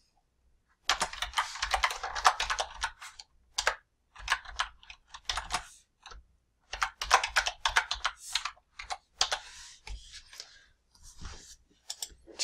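Typing on a computer keyboard in several quick bursts of keystrokes, with short pauses between them.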